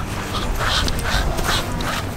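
A man on all fours imitating a dog, panting and whimpering in short breathy bursts, about three a second.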